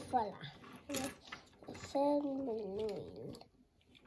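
A voice chanting 'digger' in sing-song, with a drawn-out wavering sung note about two seconds in, over small clicks of a plastic Transformer toy's parts being twisted into shape.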